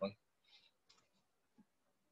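A short click right at the start, then a few faint, scattered clicks over a nearly quiet room.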